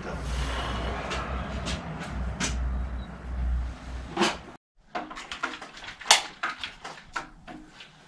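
Clicks and knocks of bicycle parts and tools being handled in a workshop, over a low rumble for the first four seconds. The sound cuts out briefly, then several sharper knocks follow.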